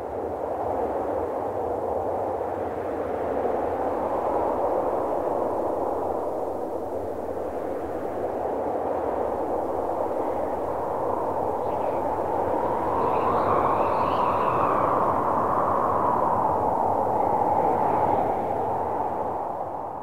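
Ambient sound-design wash closing the track: a steady rushing band of filtered noise with no beat or melody. It swells slightly and rises in pitch past the middle, then fades out at the end.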